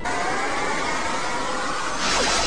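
Anime fight sound effect: a steady rushing whir that starts abruptly, with a faint tone rising slowly through it.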